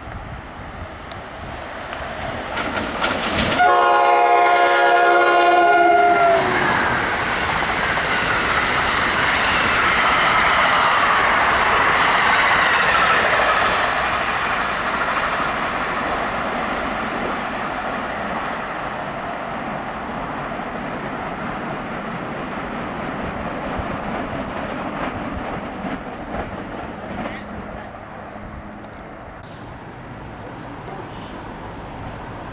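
Electric passenger train sounding a multi-chime horn for about three seconds; the chord drops in pitch as the train reaches the platform. It then rushes past with wheel and track noise that fades slowly as it runs away.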